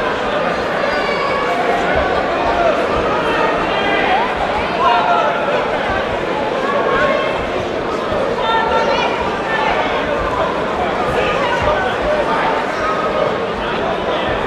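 Crowd of spectators talking and shouting over one another at a boxing bout, a steady hubbub of many voices with no single clear speaker.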